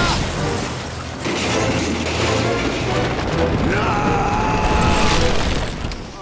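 Cartoon car-crash sound effects: a car hits the ground with a boom and goes on crashing and rumbling as it tumbles over. A steady held tone sounds for about a second and a half near the end.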